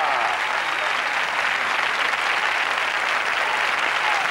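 Studio audience applauding: steady, dense clapping that holds at an even level.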